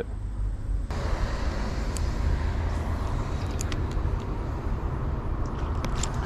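Outdoor background noise: a steady low rumble with a hiss that swells in about a second in, typical of road traffic close to the creek and wind on the microphone, with a few faint clicks.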